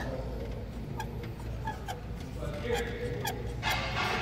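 Quiet workshop background: faint distant voices, a few small clicks and a steady low hum.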